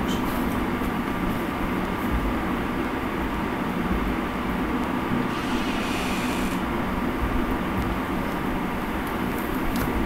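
Steady background noise with a low rumble and a faint hum, no speech; a faint hiss comes in briefly about halfway through.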